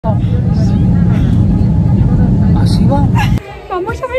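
Steady low rumble of an airliner cabin in flight, with voices over it. It cuts off abruptly about three and a half seconds in, leaving only voices in a much quieter place.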